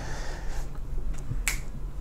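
A single sharp click about a second and a half in, over a steady low hum.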